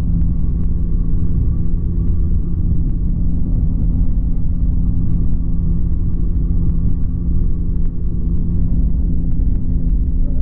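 Flexwing microlight's engine and propeller running steadily in cruise flight, a constant low drone with rumble, heard on board the aircraft.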